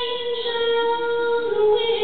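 A woman singing a country song unaccompanied into a microphone, holding long notes; the pitch steps down to a lower held note about one and a half seconds in.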